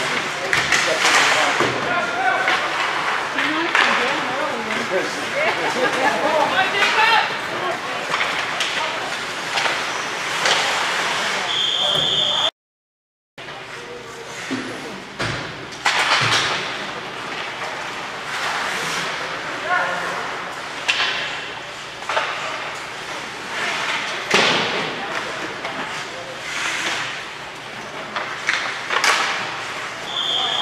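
Ice hockey game in a rink: spectators' voices and shouts with sharp knocks of sticks, puck and bodies hitting the boards and glass. A short referee's whistle blast comes about twelve seconds in, just before the sound drops out for about a second, and another near the end.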